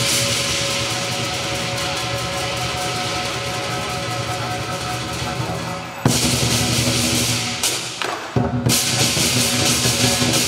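Southern lion dance percussion: a large lion drum beaten rapidly under continuously ringing, clashing hand cymbals. A sudden loud accent comes about six seconds in, and a short break just after eight seconds before the full ensemble comes back in.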